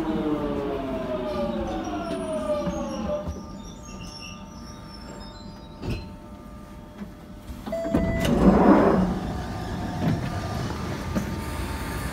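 Jubilee line tube train's traction motors whining down in pitch as it brakes to a stop, the falling tones dying away about three seconds in. Near the middle a short tone sounds and the carriage doors open with a loud rush of noise.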